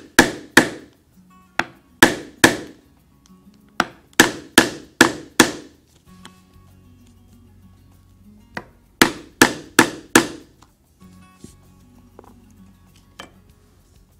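Mallet striking an oblong leather punch to cut a buckle-tongue slot through thick vegetable-tanned strap leather: a run of about a dozen sharp blows, then after a pause of about three seconds a second run of about five.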